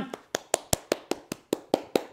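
Quick, even hand claps, about five a second, used to call a dog to come.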